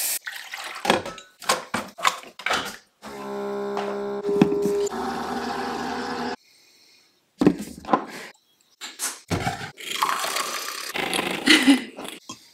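A single-serve pod coffee maker in use: clicks and knocks of handling, then the machine's steady pump hum for about two seconds as coffee runs into the cup. Further knocks and clatter follow, then a couple of seconds of whirring, liquid noise near the end.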